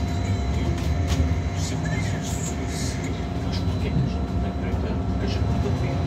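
Interior of a Wright GB Kite Hydroliner hydrogen fuel-cell electric bus on the move: a steady low rumble of road and body, with scattered rattles and clicks and faint steady whines from the drive.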